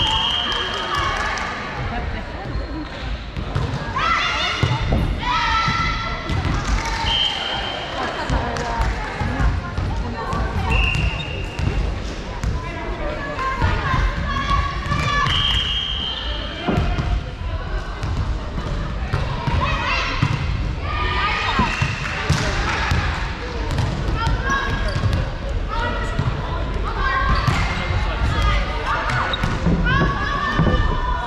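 Volleyball play in a large indoor sports hall: players' voices calling out, and volleyballs being hit and bounced on the hardwood floor. Several short, high, steady tones of about a second each sound through it.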